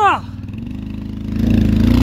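Quad bike (ATV) engine running under load as it tows a snow-buried trailer on a strap, getting louder about a second and a half in as the throttle opens and the trailer starts to move.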